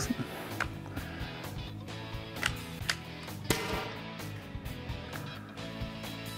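Background music with a steady beat. A few sharp clicks cut through it, and the loudest, about three and a half seconds in, is a test shot from an Umarex HDX, a CO2-powered .68-calibre paintball pump gun.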